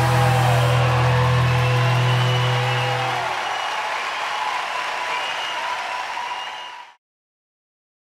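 A live rock band's final sustained chord, with bass and a held vocal, rings out and stops about three seconds in. Audience applause carries on after it, fading away and cutting to silence about a second before the end.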